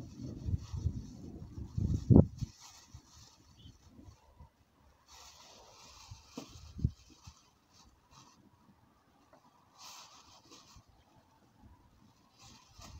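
Plastic roasting sleeve rustling and crinkling as cut potatoes are pushed into it, with a sharp knock about two seconds in and a smaller one near the middle as things are set down on the wooden table.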